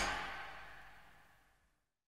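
The final chord of a 1970s disco-pop song dying away, fading into silence a little over a second in.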